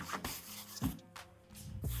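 Faint rubbing and brushing of a hand over the inflated tube of an inflatable dinghy.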